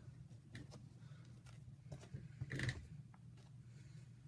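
Faint rustling and light clicks of a leather sneaker being handled and its laces loosened and pulled, with one louder brief scrape about two and a half seconds in.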